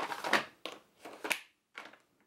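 Small clear plastic storage drawers being slid shut and pulled open, the pencils and pens packed inside rattling: a run of plastic scrapes, clacks and rattles with short gaps, the last one near the end.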